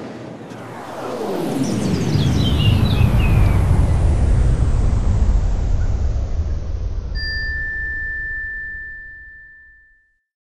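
Logo sting sound effect: a whoosh that falls in pitch into a deep rumble, with a sparkle of chimes sliding down over it. Later a single high ringing tone comes in and holds while the rumble fades out.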